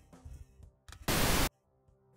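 A short burst of pink noise from a software pink noise generator: an even hiss with no notes in it. It starts about a second in and cuts off suddenly after under half a second.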